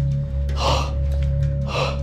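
A man breathing heavily in sharp gasps, two breaths about a second apart, over a low, sustained ambient music drone.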